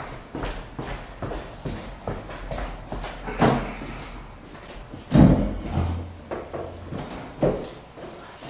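Handling noises: a string of light knocks and clicks as things are moved about on a table, with two louder thumps, one about three and a half seconds in and a heavier one about five seconds in.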